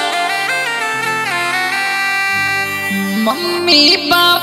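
Instrumental break in a Rajasthani-style Rasiya folk song: a reedy, wind-like lead instrument plays a melody that steps and slides between notes over a held low drone. There is no drum beat until just after the end.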